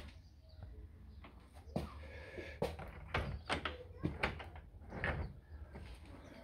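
Newly fitted uPVC front door being swung and closed to test it, with a series of light clicks and knocks from the handle and latch. It shuts cleanly in its new frame.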